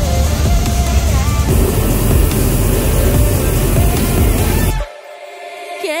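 Background music over the steady roar of a hot-air balloon's propane burner firing. The roar cuts off suddenly near the end, leaving only the music.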